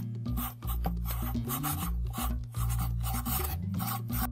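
Pencil writing on paper: a quick run of short, scratchy strokes, about ten in four seconds, as a word is written out, over background music.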